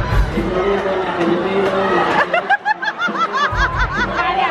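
A voice talking over background music, then, about two seconds in, a person laughing in a rapid string of short, high-pitched 'ha' syllables.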